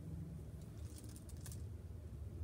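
Faint, brief rustling of fingers rubbing on the back of a hand, over a low steady hum.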